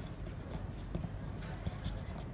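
Light, irregular plastic clicks and taps from a hand handling a small 1:18-scale plastic action figure and its armour pieces, over a low steady background hum.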